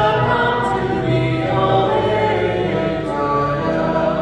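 A group of voices singing a hymn together, moving through long held notes over a steady low accompaniment.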